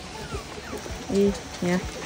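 Two short spoken calls about a second in, over a quiet background.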